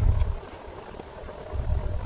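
Handling noise: hands turning a small camcorder over right by the microphone, giving a low rumble at the start and again about one and a half seconds in, with light rustling between.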